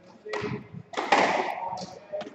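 Squash rally: the ball knocking sharply off the racquets and court walls several times, the loudest knock about a second in.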